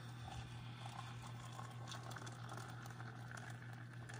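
A thin stream of water poured into a cup of ground coffee, a faint, steady splashing patter as the cup fills, over a steady low hum.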